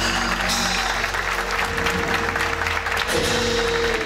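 Audience applauding over a live band's held note, with a low bass drone beneath the clapping; the held note grows louder about three seconds in.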